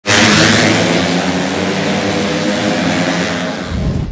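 A pack of race-tuned Yamaha Jupiter underbone motorcycles, small four-stroke single-cylinder engines, revving hard together as they launch off the start line. Near the end, music with a deep bass note cuts in.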